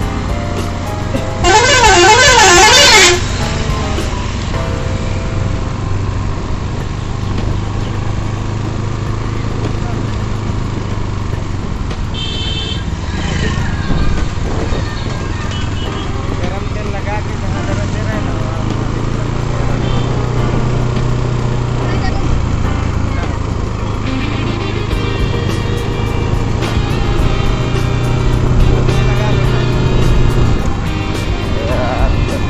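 A loud warbling vehicle horn, its pitch swinging rapidly up and down, sounds for about a second and a half near the start. Under it, the steady drone of a motorcycle engine being ridden along.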